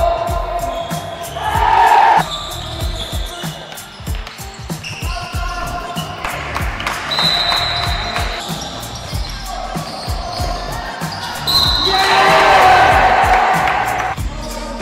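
A basketball being dribbled on a gym floor, its bounces repeating, with background music playing.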